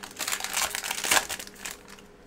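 Foil trading-card pack wrapper crinkling and cards rustling as they are handled, a rapid run of small crackles that peaks about a second in.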